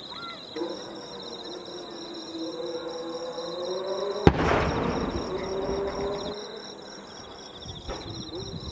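A single firework shell bursting about four seconds in: one sharp bang followed by a low rolling echo. Insects chirp steadily throughout.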